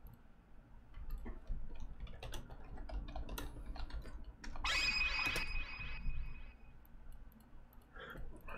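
Computer keyboard typing and mouse clicks, a scatter of short light clicks. About halfway through, a brief hiss with a steady high tone lasts a second or so.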